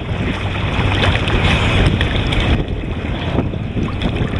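Choppy harbour water washing around a camera held at the surface, over the steady low hum of a nearby catamaran water taxi's engines.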